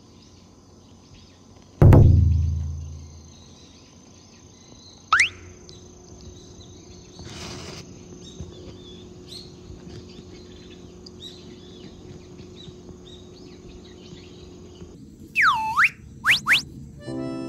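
Faint outdoor ambience of birds chirping and insects, overlaid with cartoon sound effects. About two seconds in comes a heavy low thud that rings down and fades over a second or so, the loudest sound. A quick rising whistle follows around five seconds, and two swooping down-and-up whistles come near the end.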